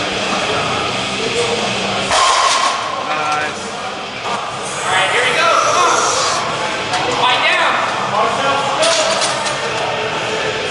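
Indistinct voices with no clear words, loud throughout, with a few short knocks or clinks.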